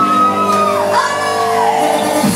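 Live pop singing over loud backing music, with one long held vocal note that drops away just before a second, and a new note rising in. Shouts join the singing.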